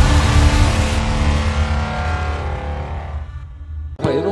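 Cinematic logo-intro sound effect: the tail of a deep rumbling boom with a ringing, droning chord that slowly dies away and fades out about three seconds in.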